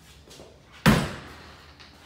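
A single loud knock about a second in, with a short ring-off in a small tiled bathroom.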